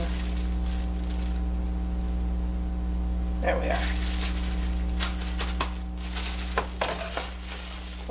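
Plastic bag crinkling as it is handled, starting about halfway through, with several sharp clicks, over a steady low hum.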